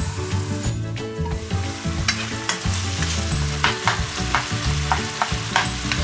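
Onion-tomato masala sizzling in oil and ghee in a steel kadai, over a steady low hum. From about two seconds in, a spatula scrapes and knocks against the pan several times as the masala is stirred.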